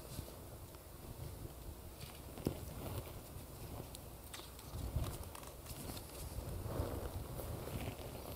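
Quiet room tone with a few faint clicks and rustles from a large picture book being handled and its page turned.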